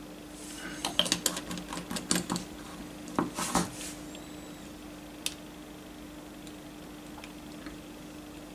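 Quick runs of small clicks and clinks from a small glass bottle and its plastic screw cap being closed and set down on the table, then a single sharp click from the plastic model parts being handled.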